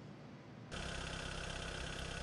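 Near silence, then about two-thirds of a second in, a vehicle engine starts to be heard idling steadily, a low even hum with street hiss.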